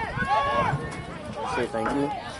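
Players and sideline onlookers shouting and calling out across an outdoor soccer field: several raised voices overlapping, with no clear words.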